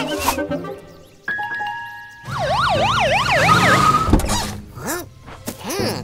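Cartoon police car siren wailing rapidly up and down, about three swings a second, for around a second and a half in the middle, over light background music.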